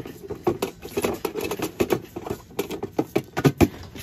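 Plastic food storage container and its sliding lid being handled: a run of irregular clicks and knocks, the loudest about three and a half seconds in.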